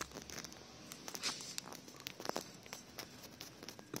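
Faint rustling and a few scattered clicks from a handheld camera being moved about, with no engine running.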